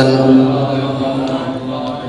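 A preacher's voice holding one long drawn-out chanted note at a steady pitch, fading away over the second second.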